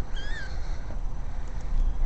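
A kitten gives one short, high-pitched mew that rises and falls, shortly after the start, over a low steady rumble.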